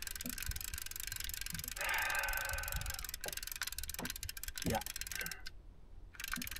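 Conventional fishing reel being cranked to bring in line, a dense run of fine clicks over a low steady rumble, with a short rush of noise about two seconds in.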